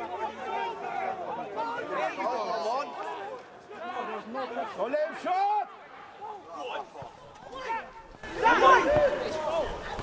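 Several footballers shouting and calling to each other on the pitch during open play, voices overlapping, with a louder burst of shouts near the end as the attack reaches the goal.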